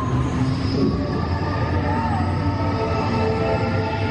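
Test Track ride vehicle running along its track with a steady low rumble, under the ride's electronic soundtrack of sustained tones and a short gliding effect about two seconds in.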